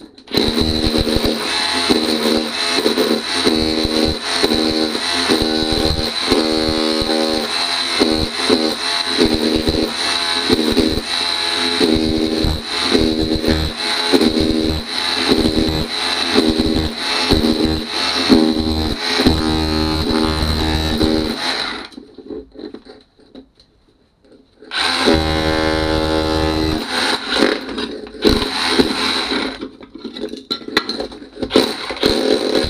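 Ryobi RSDS18X cordless SDS hammer drill running in chisel-only mode, its chisel bit hammering under ceramic floor tiles and the Marley tiles stuck beneath, a fast steady hammering rattle. It stops about 22 seconds in, then runs again from about 25 seconds, more in short spurts near the end.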